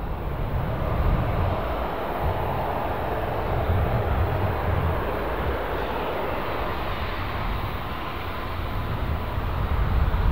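Embraer EMB-314 Super Tucano's single Pratt & Whitney PT6A turboprop running steadily at taxi power, a distant hiss and drone. Gusty wind rumbles on the microphone.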